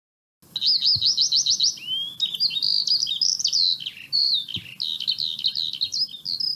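Songbird singing: a quick run of about eight repeated chirps, then varied warbling phrases, starting after a brief silence.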